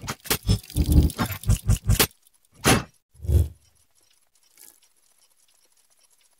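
Logo-animation sound effects: a quick run of metallic clanks and clicks for about two seconds, then two single hits, the second deeper and heavier, about three seconds in.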